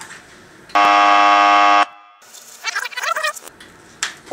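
A loud, harsh buzzer sounds once for about a second, starting just under a second in: a game-show style 'wrong answer' buzzer sound effect. A shorter, quieter sound with wavering pitch follows about three seconds in.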